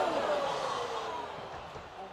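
A person's long, drawn-out 'ohh', falling in pitch and fading away: a reaction to a heavy skateboard slam on a vert ramp.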